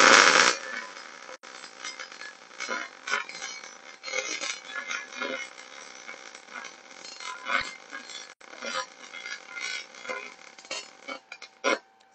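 MIG/MAG welding arc on 3/16-inch (4.7 mm) steel plate in the vertical 3G position: an irregular crackle and sputter with scattered pops, loudest as the arc strikes at the start, with a couple of brief breaks and cutting out just before the end. At about 140 amps and 18.8 volts the puddle is opening up and leaving undercut, by the welder's own account.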